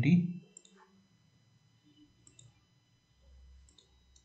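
A few faint computer mouse clicks, spaced apart, in a quiet room.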